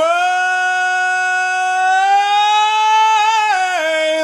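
A high male tenor voice singing one long held note a cappella, with no instruments. The pitch creeps slightly upward through the middle of the note and falls away near the end.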